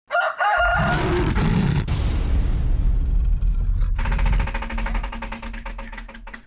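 Intro theme music with sound effects: a short wavering call at the start, a low rumbling swell, then a held tone with rapid ticking that fades near the end.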